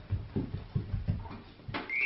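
A string of soft, irregular low thumps and bumps as a child scrambles over to a toy mailbox and grabs it, then near the end a steady, high electronic chime starts up as its flap is pulled open: the 'magic mailbox' sound.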